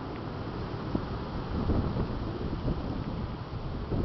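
Wind buffeting the handheld camera's microphone, an uneven low rumble, with a few faint knocks.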